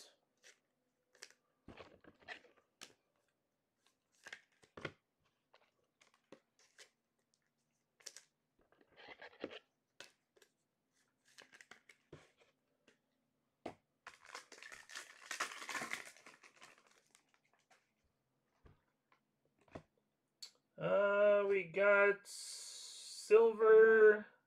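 Scattered small clicks and taps of cards being handled, then a trading-card pack wrapper torn open with a crinkling rip lasting about two seconds, halfway through.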